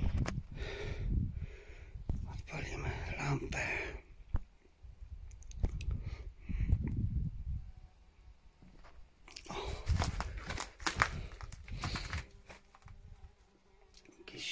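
Crunching and rustling on rubble and broken wood debris, mixed with handling noise and some low murmured speech. The crunching comes in irregular clusters and is loudest about ten seconds in.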